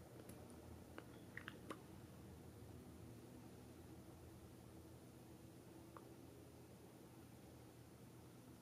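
Near silence: room tone with a faint steady low hum, a few faint clicks between one and two seconds in, and one more near six seconds.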